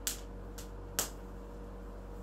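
Three short, sharp clicks about half a second apart, the first and last loudest, over a faint steady hum.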